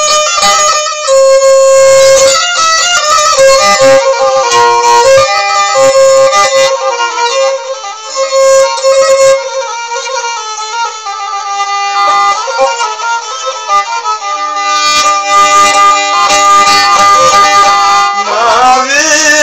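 Kemençe, the small upright-held bowed fiddle, playing a quick instrumental melody over a steady sustained drone note, with no singing.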